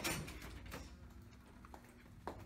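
A glass entrance door being pushed open: a short rush of sound at the start, then a few light clicks over faint room tone.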